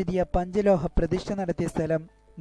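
Speech only: a voice narrating rapidly and continuously in Malayalam.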